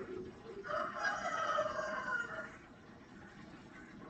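A single drawn-out bird call, about two seconds long, starting just over half a second in.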